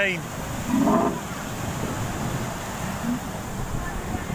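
Small waves breaking and washing up on a sandy beach: a steady rush of surf. A brief background voice comes in about a second in.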